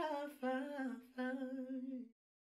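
Wordless vocal melody in the sped-up outro of a rap track: three held notes, each a step lower than the one before, and then the track ends.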